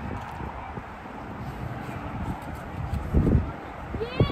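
Wind buffeting the microphone in uneven low rumbles, with a stronger gust about three seconds in, over steady outdoor background noise.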